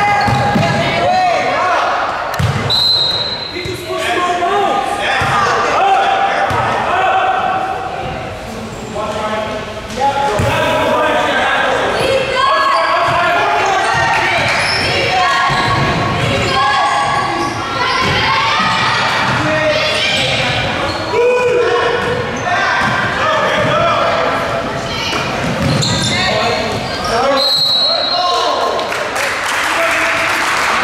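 Basketballs bouncing on a hardwood gym floor, with players and spectators shouting and calling out in an echoing hall. Two short, high whistle blasts, a few seconds in and near the end.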